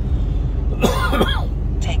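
A man coughs once, about a second in, over the steady low drone of a Mercedes Actros lorry cab on the move. He starts speaking again near the end.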